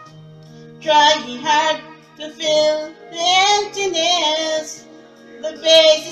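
Karaoke: a woman singing into a handheld microphone over a slow backing track with long held keyboard notes, in several drawn-out sung phrases with short gaps between them.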